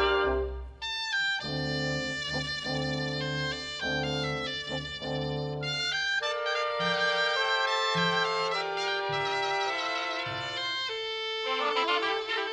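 A cobla playing a sardana: the double-reed tenores and tibles carry the melody over trumpets, trombone, fiscorns and double bass. A loud full-band phrase ends just under a second in, and the reeds take up a new melodic line over a pulsing bass.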